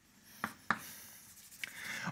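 Chalk writing on a blackboard: two sharp taps as the chalk strikes the board, then faint scratchy strokes.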